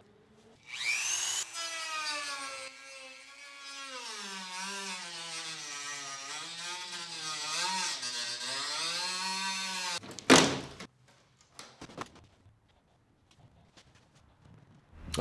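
Corded handheld rotary tool spinning up and cutting into a molded plastic closeout panel along a trim line, its motor pitch wavering up and down as the bit bites. It stops about ten seconds in, followed by a short loud burst and a few light knocks.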